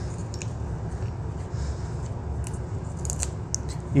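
Small parts of a Watts 009 backflow preventer's relief-valve diaphragm assembly being handled by hand as the nut is taken off its threaded stem. There are faint scrapes and a few light metallic clicks, more of them in the second half, over a steady low hum.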